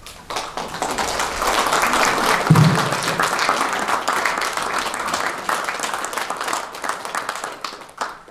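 Audience applauding: steady clapping that starts just after the start, holds, and stops abruptly at the end, with one low thump about two and a half seconds in.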